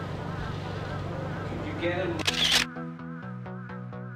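Background music, broken about two seconds in by a short, loud camera-shutter sound. A different music track with a steady fast electronic beat then starts.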